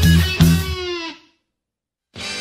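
Electric bass playing along with a band's rock track, a note sliding down in pitch, then the whole band stops dead a little over a second in, leaving silence.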